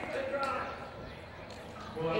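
Indistinct talking in the first half second, then a quieter stretch with a few soft thuds.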